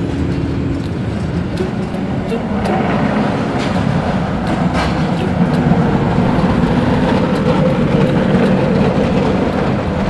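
Gulmarg Gondola cabin running uphill along its cable, heard from inside: a steady rumble with a few faint clicks, louder from about halfway through.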